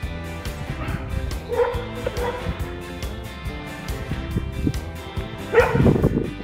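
Background music with a dog yipping a few times: short calls around a second and a half to two seconds in, and a louder one near the end.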